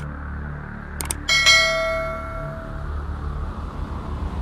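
A few short clicks, then a single bell ding about a second and a half in that rings out and fades over about a second: the stock sound effect of a YouTube subscribe-button animation.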